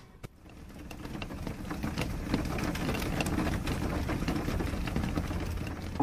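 Rain falling steadily, a haze of sound with many small drop ticks over a low rumble, fading in over the first second or two.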